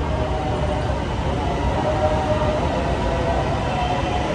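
Electric metro train pulling into the station along the platform: a steady rumble of the wheels with a faint wavering whine above it.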